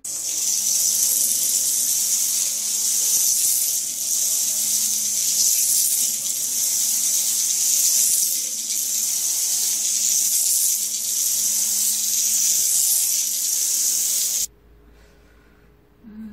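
A loud, steady hiss, strongest in the high treble, like rushing water or static, that cuts off suddenly near the end.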